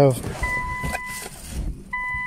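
Infiniti Q50 dashboard warning chime: a steady electronic tone held for about a second, then sounding again just before the end, part of a regular on-off repeat.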